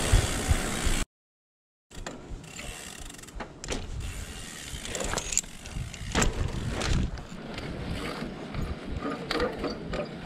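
Mountain bike rolling on pavement: irregular mechanical clicking and ticking from the drivetrain and hub, with creaks from the bike, which is creaky at the moment. A louder rush of noise fills the first second, then the sound cuts out completely for almost a second before the clicking resumes.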